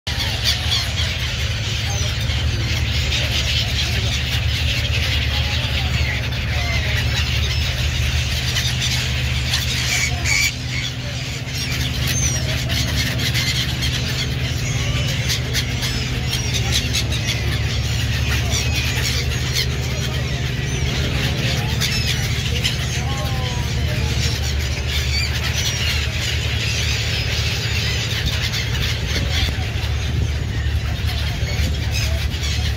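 A large flock of gulls calling continuously, many short high squealing cries overlapping, over a steady low drone.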